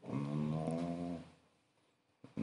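A man's voice holding one drawn-out, steady-pitched 'mmm' hum for about a second, a thinking sound before speaking.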